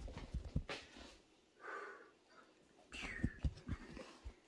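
Soft footsteps and handling thumps on a handheld phone camera carried through rooms, in clusters near the start and again about three seconds in, with a couple of faint brief sounds between them.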